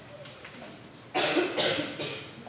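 A person coughing twice in quick succession, starting just past a second in.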